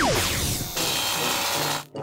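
Cartoon sound effect: the tail of a falling whistle, then a harsh, rasping buzz that cuts off abruptly near the end.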